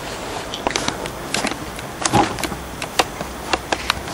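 Scattered light clicks and knocks, with one slightly louder knock about halfway through, over a steady background hiss.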